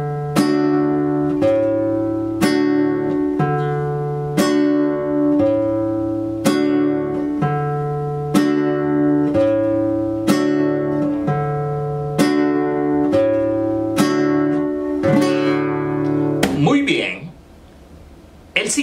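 Nylon-string classical guitar playing a slow, steady strum rhythm on a D major chord. A bass note alternates between the D and A strings, each followed by a strummed chord left ringing, about one stroke a second. The playing stops shortly before the end.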